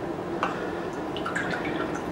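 Water from a plastic bottle dribbling into a small ceramic espresso cup: a few light drips and splashes over a faint trickle.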